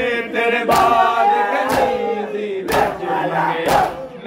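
Group of men chanting a Punjabi noha (Shia lament) in unison into a microphone, with a sharp slap about once a second from hands striking chests in matam, keeping the beat.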